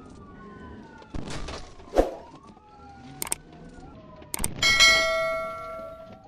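Police car siren wailing, its pitch slowly rising and falling, with a few sharp knocks; about four and a half seconds in, a loud metallic clang rings out and fades over the next second or so.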